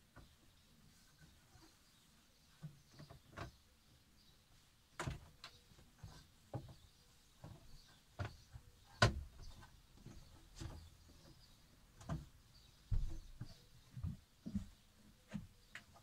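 Scattered knocks, clicks and bumps, about a dozen of them and irregular, the loudest about nine seconds in, as the inside of a camper fridge is wiped clean and its plastic shelves and door are handled.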